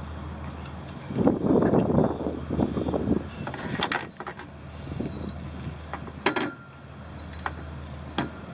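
A couple of seconds of loud rustling and handling noise, then a few sharp clicks and knocks, over a steady low hum.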